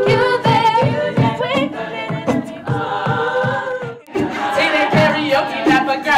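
Women's a cappella group singing in harmony into microphones over a steady pulsing beat. It breaks off for a moment about four seconds in, then starts again.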